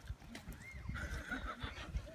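A man laughing, faint and high.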